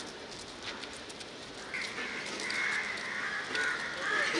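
Crows cawing, several calls overlapping from about halfway through, over faint scattered clicks and background noise.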